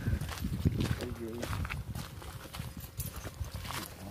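Footsteps on a gravel dirt road, an irregular run of low thuds as the person holding the camera walks. A brief murmur of a voice about a second in.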